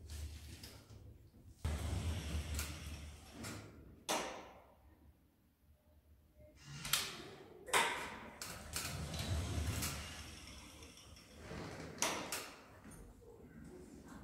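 Power wheelchair's electric drive humming low in short runs, broken by several sharp knocks and clunks of doors, among them a sliding lift door. A quiet stretch falls in the middle.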